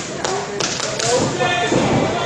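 A few sharp thuds and taps of wrestlers' feet on the ring mat, about half a second and a second in, under voices talking.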